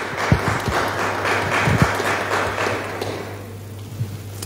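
Scattered applause from members of parliament in a large debating chamber, with a few low thumps in the first two seconds. It fades away after about three seconds.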